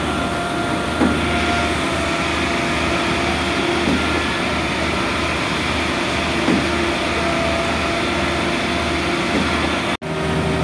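Heavy truck engines running steadily: a low, continuous drone with faint steady whines above it and a few small knocks.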